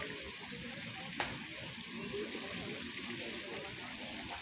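Steady outdoor background hiss with faint, indistinct voices in the distance, and a single sharp click about a second in.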